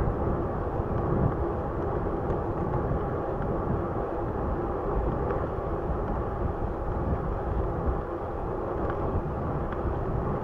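Raleigh Redux bicycle rolling steadily along an asphalt path: a constant tyre hum on the pavement, with wind rumbling on the microphone.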